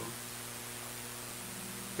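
Steady electrical mains hum with a layer of hiss: the background noise of the recording.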